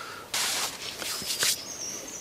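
Outdoor woodland ambience: a short burst of hiss about half a second in, a few fainter ones after, and thin, high bird calls near the end.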